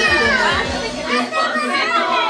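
Dance music with a steady beat and a singing voice, mixed with many children and adults talking and calling out.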